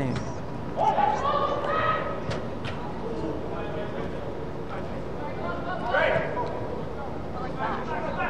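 Players' voices calling and shouting across a large, echoing indoor soccer dome, over a steady crowd-and-room hubbub. A couple of sharp ball kicks sound about two and a half seconds in.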